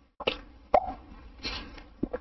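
Brief clicks and short crackly bursts on a telephone call line that is breaking up, with the audio cutting out completely for an instant at the start.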